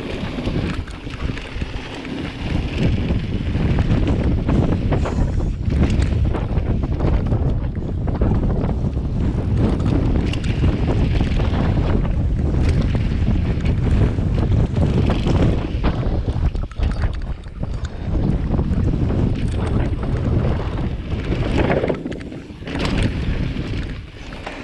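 Wind buffeting the microphone of a camera on a mountain bike riding fast downhill, with the rumble of knobby tyres on a dirt trail and scattered clicks and knocks from the bike rattling over rough ground.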